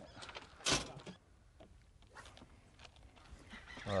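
A speckled trout being landed with a net at the side of a boat: one short, loud thump and splash under a second in, then a few faint knocks against the hull.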